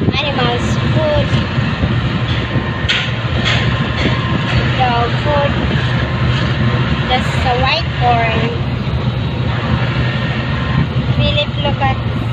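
A vehicle's engine and road noise running steadily, with a constant low hum, while voices come and go over it.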